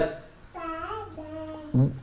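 A young child's voice, not the preacher's, making a drawn-out sung note of about a second that wavers in pitch and then holds steady.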